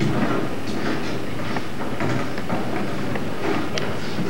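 Footsteps and scattered knocks on a stage floor, irregular, over a steady noisy background.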